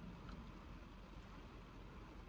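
Faint steady hiss of heavy rain falling on a car's roof and windows, heard from inside the cabin, with a low rumble underneath.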